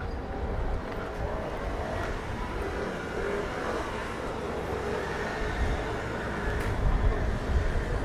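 City street ambience: a steady low rumble of traffic, with faint voices of passers-by.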